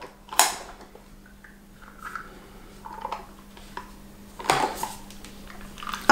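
Handling noise as an attachment is fitted onto the head of a wand vibrator: a sharp click about half a second in, scattered small knocks and rubbing, and a louder clatter near the end.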